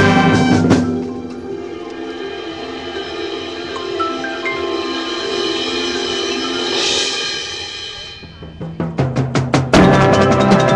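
High school marching band playing its field show. A loud full-band chord drops away about a second in to a softer passage of held chords with front-ensemble mallet percussion, swelling near the middle. In the last second or two a quickening run of drum strikes grows louder.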